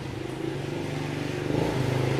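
A motor vehicle engine running steadily, growing louder about one and a half seconds in.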